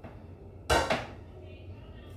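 A serving spoon knocks sharply twice against the cookware while food is dished from a pot onto a plate, two quick knocks a little under a second in.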